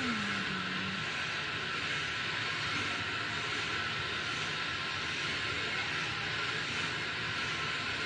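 A steady, even background hiss with no rhythm or change, under a voice that trails off in the first second.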